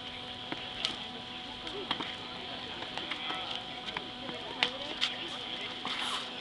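Scattered sharp slaps and stamps from the strikes, blocks and footwork of two people sparring through a choreographed kung fu set, coming about a second apart over a crowd's low chatter and a steady hum.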